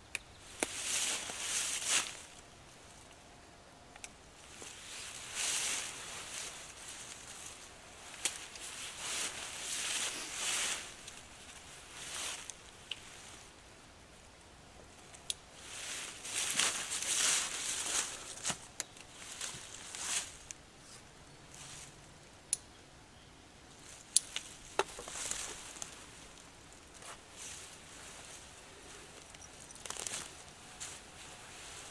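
Repeated bursts of rustling as a nylon mesh bug net is gathered and pulled off a hammock, mixed with footsteps in dry fallen leaves and a few sharp clicks.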